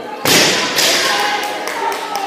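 A loaded barbell with rubber bumper plates dropped onto the gym floor: it lands with a loud crash about a quarter second in and hits the floor again about half a second later as it bounces.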